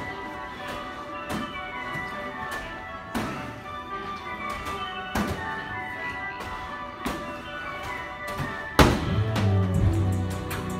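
Music playing, with a medicine ball thudding about every two seconds as it is thrown against the wall and caught during wall balls; the loudest thud comes near the end.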